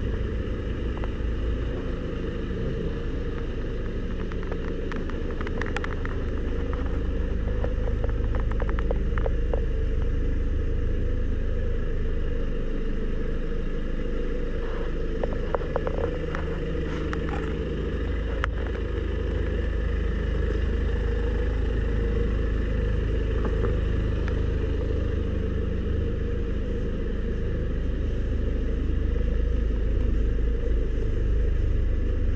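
BMW 5 Series E60 diesel engine idling steadily with a low, even rumble, a little louder near the end when heard close to the exhaust tailpipe.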